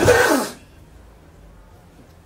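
A man's short, breathy vocal sound into a lectern microphone in the first half second, then quiet room tone.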